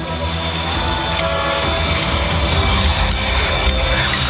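Background music score: sustained, held tones over a continuous deep low rumble, with no beat and no speech.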